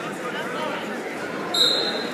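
A referee's whistle blown once, briefly and shrilly, about one and a half seconds in, the signal for the wrestlers to start wrestling. Crowd voices chatter throughout.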